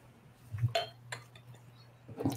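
Glassware clinking faintly a few times as a whiskey bottle and tasting glass are handled, with a brief ring about three quarters of a second in.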